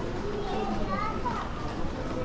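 Indistinct voices of people close by, among them a child's high voice, over a steady background hum.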